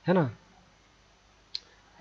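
A short spoken word, then low room tone broken by one sharp, brief click about one and a half seconds in.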